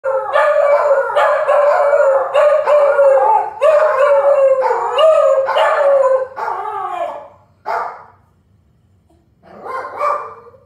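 Shiba Inu howling: a long wavering howl in a string of notes that each rise and fall, for about seven seconds, then one short call, a pause, and a brief last call at the end.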